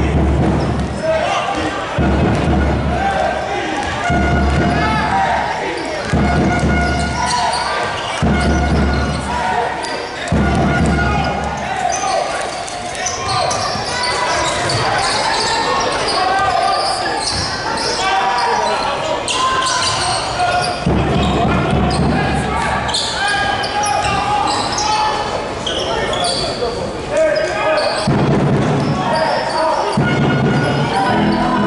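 Indoor basketball game sound in a large, echoing gym: a basketball dribbled and bouncing on the hardwood court amid players' and bench voices, with low rumbles coming and going.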